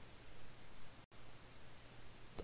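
Faint microphone hiss with a low steady hum, and a brief dead-silent dropout about a second in.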